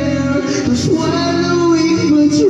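Videoke singing: a voice holds long, wavering notes over a recorded backing track, played loud through the machine's speaker.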